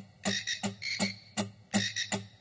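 Rhythmic mouth percussion built up on a loop pedal: short, clicky vocal hits about five times a second in a repeating groove.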